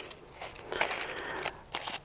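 Soft rustling and crinkling of plastic and foil ration packets being handled, with a few short sharp crackles.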